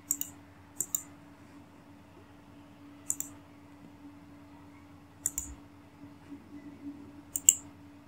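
Computer mouse button clicks, about five at uneven gaps, the loudest near the end, as wire segments are placed in schematic software. A faint steady hum sits underneath.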